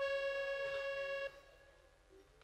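A single steady musical note, one pitch with rich overtones, held for just over a second and then cut off, leaving only faint background noise.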